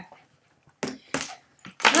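Two short metallic jingles about a second in, like small metal tags shaken as a dog is handled, and a person's 'oh' starting near the end.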